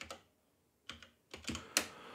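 Typing on a computer keyboard: about half a dozen separate keystrokes at an uneven pace.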